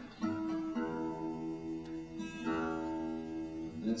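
Acoustic guitar: a chord strummed and left to ring, then a second chord struck a little past halfway and left to ring.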